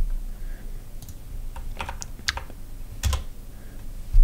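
Typing on a computer keyboard: a handful of separate, uneven keystrokes while a short terminal command is entered.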